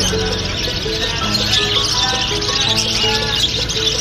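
Background music with held notes, over the dense high chirping and chattering of a crowded cage of small parrots: lovebirds and budgerigars.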